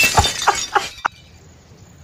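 Glass shattering at the very start, with bits ringing and tinkling for under a second, then a single sharp click.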